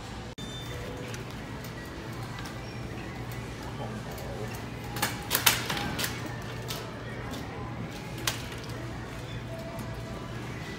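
Background music and indistinct voices over a steady low hum. A quick run of sharp clatters comes about five seconds in, with one more near eight seconds.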